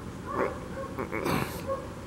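A dog whimpering faintly a few times, with a brief rustle as a plastic action figure is set down on a mat.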